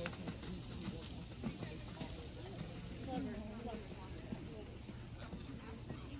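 Faint, indistinct voices of onlookers, with the soft, muffled hoofbeats of a horse cantering on arena sand.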